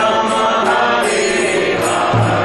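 Devotional kirtan: voices chanting a mantra together with a harmonium playing steady sustained chords.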